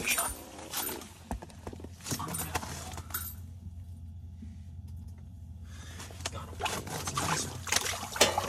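A walleye being hand-lined up through a hole in the ice. Rustling and small clicks of line and clothing handling, quieter in the middle, with busier handling noise near the end as the fish comes up onto the ice. A steady low hum runs underneath.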